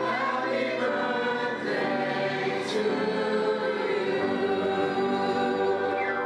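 A choir singing, many voices holding long notes together.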